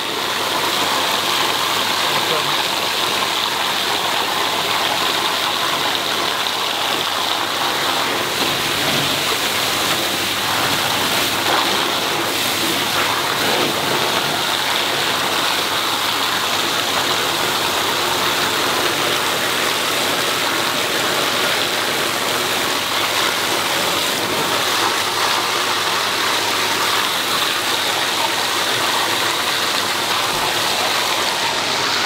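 Pond water gushing at full pressure out of an open bottom-drain purge pipe onto a concrete floor, a loud, steady rush. The ball valve is off the line, so nothing holds back the flow from the main pond.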